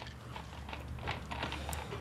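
Faint small clicks and crackles of a plastic drink bottle being handled, its screw cap being turned.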